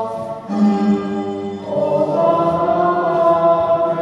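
Choral singing: voices holding long sustained chords that move to new notes about half a second in and again a little before the two-second mark.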